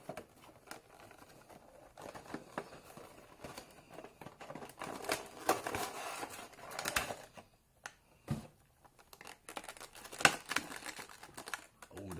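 Cardboard Funko Pop box being opened and its clear plastic blister insert pulled out: rustling, crinkling and scattered clicks of card and plastic, coming in bursts, with a sharp click about ten seconds in.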